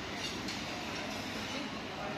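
Steady background noise of a restaurant terrace, with no distinct sound standing out.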